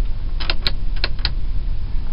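Several sharp clicks from handling the overhead console's plastic sunglass holder, bunched in the first half-second or so and ending about a second and a quarter in, over a steady low rumble.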